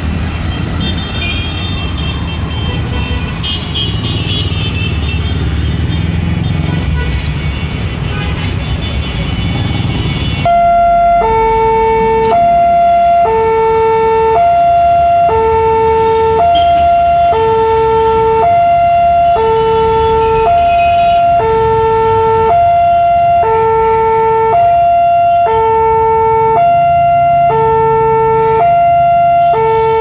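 Road traffic, then about ten seconds in a railway level-crossing alarm starts: an electronic two-tone signal alternating between two tones about once a second, warning that a train is approaching and the barrier is closing.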